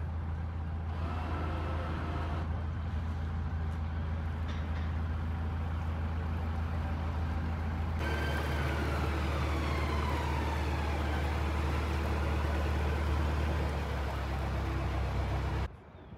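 Narrowboat diesel engine running steadily, a low hum. About halfway through, a higher tone glides slowly downward over it. The engine sound cuts off abruptly just before the end.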